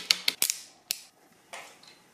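Shimano SIS Index six-speed thumb shifter clicking through its gear positions: a quick run of clicks about five a second, then a single click just before a second in.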